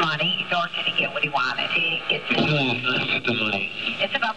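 Speech only: a woman, then a man, talking in a recorded telephone conversation.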